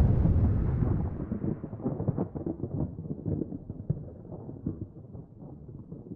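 Logo-outro sound effect: a deep, thunder-like rumble dying away, growing duller and quieter as it fades, with scattered crackles in its tail.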